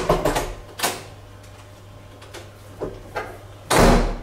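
A hotel room door being shut: a quick cluster of clicks and knocks at the start, then a louder knock with a deep thud near the end.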